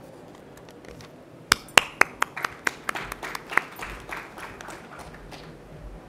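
Sparse applause from a small audience: a handful of sharp, separate claps that begin about a second and a half in and thin out over about four seconds.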